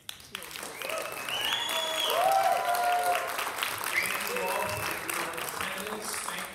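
Audience applauding, starting suddenly and building over the first two seconds, with a few voices calling out over the clapping.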